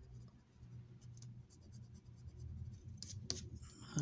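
A coin scratching the coating off a paper scratch-off lottery ticket: faint, with a few sharper scrapes about three seconds in.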